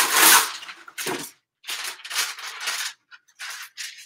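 A sheet of paper rustling and crinkling as it is handled, in a loud burst in the first second and then several shorter rustles.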